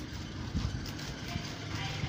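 Hand-scrubbing of wet laundry on a floor, an uneven rubbing and scraping over a steady low rumble.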